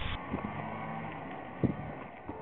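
A motor's steady low hum, with a single sharp knock about one and a half seconds in.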